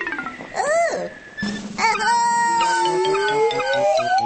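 Cartoon soundtrack music with sliding pitched effects. A quick swoop up and down comes just under a second in. From about two seconds a held tone slides slowly down while another tone glides steadily upward.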